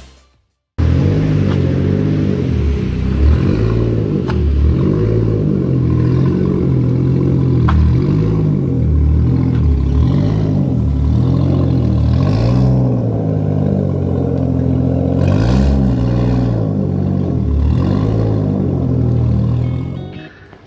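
Toyota Supra Mk4 engine running, its revs rising and falling again and again. This follows a short silence at the start.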